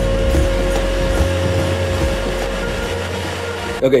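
CNC router spindle milling a pine workpiece, cutting with a ball end mill: a steady whine over a low rumble that stops shortly before the end.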